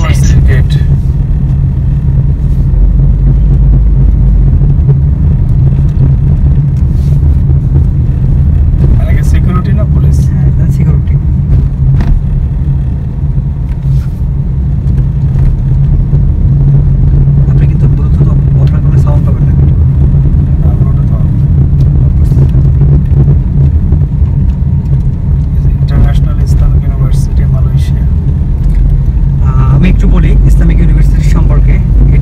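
Steady low drone of a car's engine and tyres on the road, heard from inside the cabin while driving.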